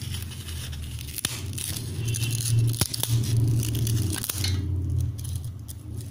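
Crisp fried sabudana (sago) papad being broken apart by hand, crackling, with a few sharp snaps as the brittle pieces crack. A low hum runs underneath.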